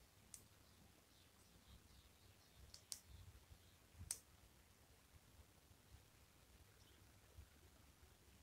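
Faint clicks of plastic LEGO bricks being handled and pressed together, a few sharp ticks in the first half over near silence.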